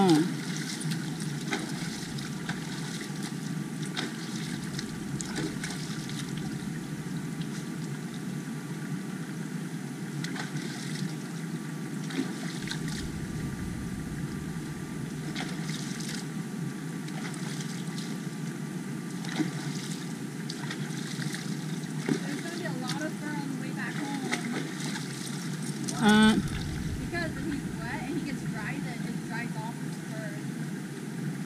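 Steady rush of creek water running over rocks, with small splashes. Voices come in briefly near the end.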